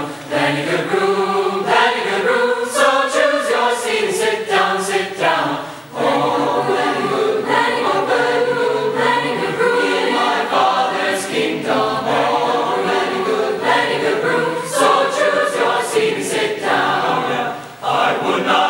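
Large mixed choir singing a spiritual in close barbershop-style harmony with jazz touches, with brief breaks in the sound about six seconds in and just before the end.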